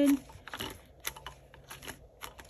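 Clear plastic envelope pages being turned in a small six-ring binder: a handful of soft crinkles and light taps.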